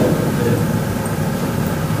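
Steady low rumble of background room noise, like a ventilation system, with no break or change.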